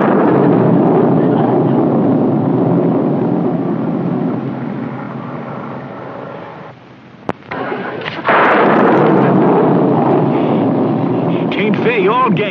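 Thunder: a loud rumbling clap that slowly dies away over about six seconds, then a second loud clap that breaks in suddenly about eight seconds in and keeps rumbling.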